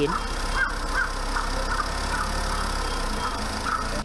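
An engine idling with a steady low rumble that cuts off just before the end, with a string of short, faint high-pitched calls over it.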